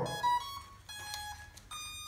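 Mirarobot M600 RC flying wing's electronics playing a short power-up tune of electronic beeps at several different pitches as the battery is connected, signalling that the aircraft has powered up.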